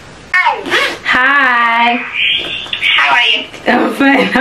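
A young woman's excited, wordless vocalising: a long wavering cry about a second in, then a high squeal, then breathy laughing voice.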